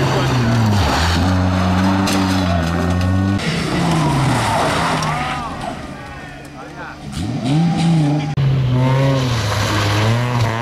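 Rally car engines revving hard, pitch climbing and dropping with gear changes and lifts as the cars pass at speed, with tyre and loose-surface noise. The sound switches abruptly to a different car about three and a half seconds in and again near the end.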